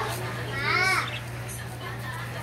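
A child's voice calling out briefly, about half a second in, over a steady low hum.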